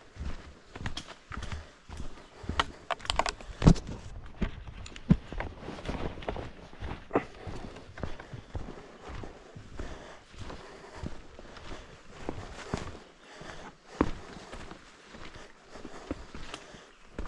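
Hiking boots walking steadily on a rocky, muddy forest trail, in irregular footfalls with a few louder thuds.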